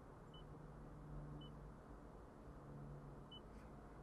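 Near silence: faint cabin room tone with three short, faint high beeps from the Toyota infotainment touchscreen as it is pressed.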